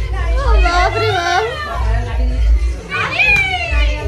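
Excited, playful voices of several people calling out and laughing, with a high squeal about three seconds in and a low rumble underneath.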